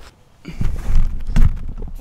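Loud low rumbling noise on the microphone, with two heavy thuds about one and one-and-a-half seconds in.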